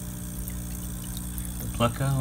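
Aquarium equipment running: a steady low electric hum with the soft wash of bubbling water, and a man's voice starting near the end.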